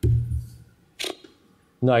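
A man speaking into a microphone pauses. A short low voiced sound trails off at the start, a single short click comes about a second in, and his speech resumes near the end.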